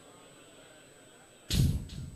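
Quiet room hiss, then a sudden short noisy thump about one and a half seconds in that fades within half a second.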